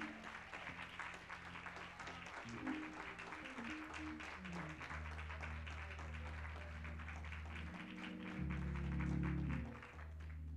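Congregation applauding while a keyboard plays held low chords, the chords shifting every couple of seconds and swelling loudest near the end.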